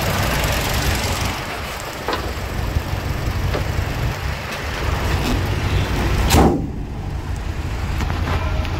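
Toyota Innova's 2.0-litre 1TR-FE four-cylinder petrol engine idling steadily. A single loud bang about six seconds in as the bonnet is slammed shut.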